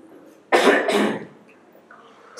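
A woman gives two quick coughs, clearing her throat into a hand-held microphone about half a second in.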